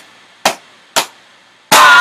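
Two sharp smacks about half a second apart, then a loud laugh breaking out near the end.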